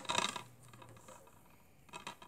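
A shrink-wrapped plastic DVD case being turned over in the hand: a short burst of plastic clatter and crinkle in the first half second, then a light tap just before the end.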